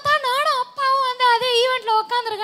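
A woman singing into a microphone: a short wavering phrase, then one long note held with a slight vibrato and slowly sinking in pitch.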